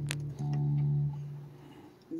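Hollow-body electric guitar: a low note ringing on, then a fresh note picked about half a second in that holds briefly and fades away over the last half second.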